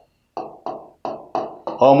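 Marker pen tapping and stroking on a lecture board as letters are written: a run of short taps about three a second. A man's voice comes in near the end.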